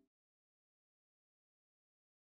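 Digital silence: the harp music has just faded out and nothing sounds.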